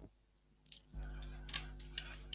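A few faint, sharp clicks from a computer mouse, over the low steady hum of a video-call microphone. The audio drops to near silence for about half a second before the hum comes back.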